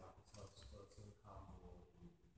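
Near silence: room tone with a few faint, indistinct sounds.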